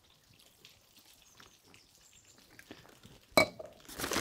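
Faint small handling ticks, then one sharp clink of a container or dish about three and a half seconds in, while marinade is being poured onto a beef shank wrapped in butcher paper.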